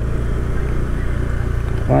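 Motorbike engine running steadily at cruising speed, a constant low hum with road and wind rumble.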